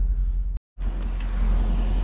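Corvette C6 Grand Sport's V8 engine idling with a steady low rumble. The sound cuts out completely for a split second just over half a second in, where the scene cuts, then the rumble resumes outdoors with more hiss.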